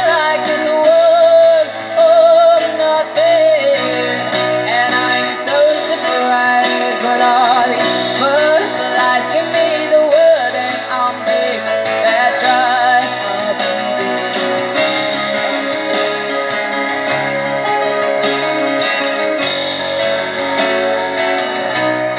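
A small live band playing a song on acoustic guitar, electric guitar and keyboard through a PA, with a melody that wavers in pitch through the first half and steadier held notes later.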